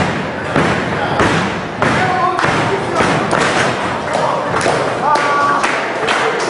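Repeated thuds of impacts on a wrestling ring's mat, coming unevenly throughout, with voices shouting in between.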